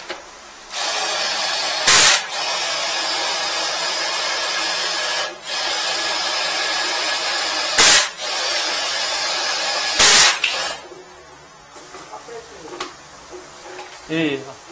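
High-pressure sewer jetter hose spraying water with a loud, steady hiss. The spray breaks off briefly about five seconds in, has three short louder blasts, and stops about eleven seconds in, leaving a few faint clicks.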